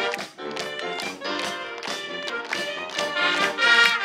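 Marching band playing: brass, saxophones and flutes over sousaphone bass and a steady drumbeat.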